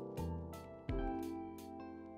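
Background music: soft instrumental track with plucked and keyboard notes struck about once every second, each fading away.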